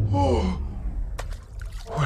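A short gasping cry from a person's voice, sliding down in pitch in the first half second, then a hushed lull over a steady low rumble with a few faint clicks.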